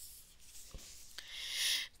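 Picture book being handled: faint paper rubbing with a soft thud a little under a second in, then a rustling hiss that grows louder for about half a second near the end.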